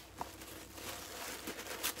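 Faint rustling with a few light taps and clicks: a subscription box being handled and opened.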